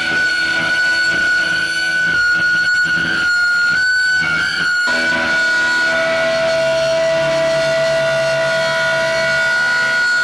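Amplified electric guitar feedback: a loud, steady high whine held throughout, joined about six seconds in by a second, lower held tone.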